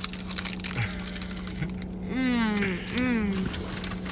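Crisp crunching of a bite into a burger layered with Ruffles potato chips, chewed with the mouth closed, then two hummed "mm"s of approval about halfway through.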